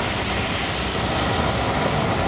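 A truck driving slowly on the road, its engine and tyres making a steady, unbroken noise.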